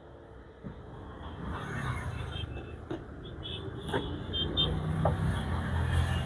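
Low rumble of a motor vehicle running nearby, building and growing louder in the second half, with a couple of light knocks.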